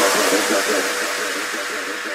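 The tail of an electronic drum and bass track with the drums and bass gone: a hissy synth texture with one held tone, fading out steadily.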